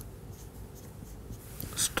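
Felt-tip marker writing on a whiteboard: faint scratching strokes as a word is written, a little stronger near the end.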